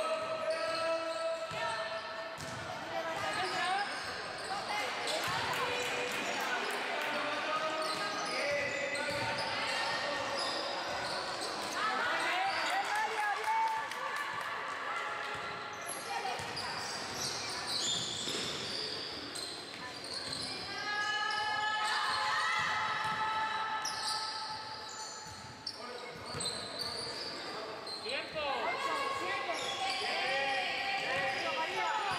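A basketball being dribbled and bouncing on an indoor court during play, repeated thuds that echo in a large hall, with players' voices calling out.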